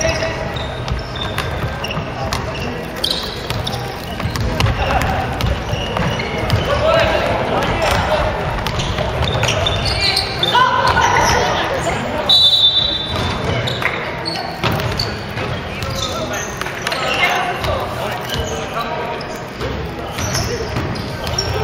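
Basketball game on a hardwood gym floor: the ball bouncing, players' shoes and calls echoing in the hall. A brief high-pitched squeak comes about twelve seconds in.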